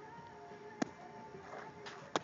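A pitched 11-inch fastpitch softball landing with one sharp smack about a second in, over faint steady tones.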